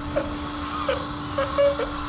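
A steady hiss, a comic steam sound effect, runs under short muffled, strained hums from a man holding his breath with his cheeks puffed out. A low steady tone sounds beneath them.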